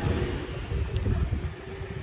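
Low, uneven rumble of wind buffeting the phone's microphone outdoors, with faint traffic noise behind it.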